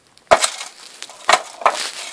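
Hard plastic knocks and rubbing as Littlest Pet Shop toy figures and their plastic playset are handled: one sharp knock shortly after the start, then two more a little over a second in, with scraping and rustling between.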